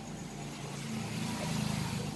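Low, steady drone of a motor vehicle's engine, growing louder about a second and a half in.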